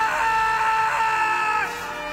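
A long, high-pitched scream from an anime character, held at one pitch and wavering slightly, then breaking off shortly before the end, over dramatic background music.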